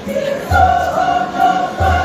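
Choir singing a held chord in several parts, with deep drum beats about half a second in and again near the end.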